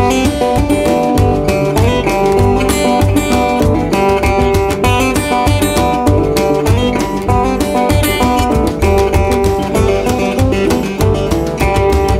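Instrumental break of a folk-rock song: strummed acoustic guitar over a steady drum beat and bass.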